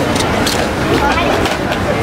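Paper bag crinkling and rustling as a box of fries is pulled out of it, over steady outdoor background noise with voices.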